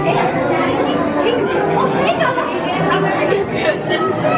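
Several voices talking over one another in lively, overlapping chatter.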